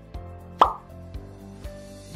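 Light background music with a steady beat, and about half a second in a single short cartoon-style pop sound effect with a quick drop in pitch.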